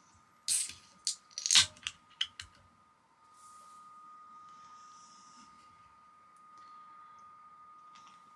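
Ring-pull of a 330 ml aluminium Heineken can cracked open: a sharp hiss of escaping gas about half a second in, then a louder snap and a few clicks of the tab. After that a faint fizz of the lager.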